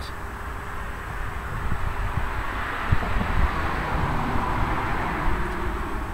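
A passing vehicle: a rushing noise that swells over a few seconds and then fades, over a low rumble.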